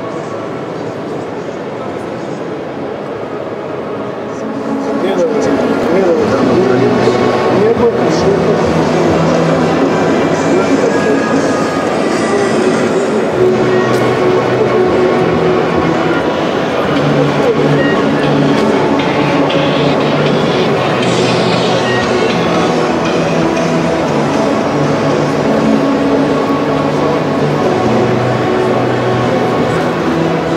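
Busy exhibition-hall ambience with indistinct voices; background music comes in about four or five seconds in and plays on over the hall noise.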